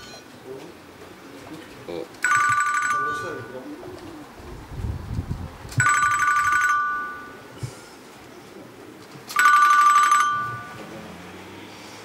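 Electronic ringing tone, like a telephone ring, sounding three times in about one-second rings roughly three and a half seconds apart.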